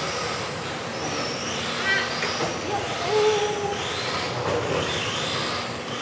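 Superstock-class electric RC touring cars racing, their motors whining up and down in pitch again and again as they accelerate and brake around the track, over a steady hiss of running cars.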